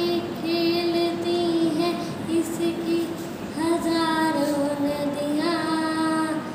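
A young girl singing a patriotic song solo and without accompaniment, holding long notes in phrases with short breaths between them.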